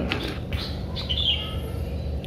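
A small bird chirping in the background: two short high notes, the second about a second in and sliding slightly downward, over a steady low outdoor rumble.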